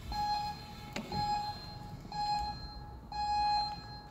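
Gym interval timer sounding its start countdown: four steady electronic beeps about a second apart, the last one held longer and louder, signalling the start of the timed workout.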